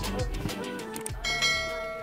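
Background music with a beat, giving way just over a second in to a bright bell chime that rings on and fades, the notification-bell sound of an on-screen subscribe animation.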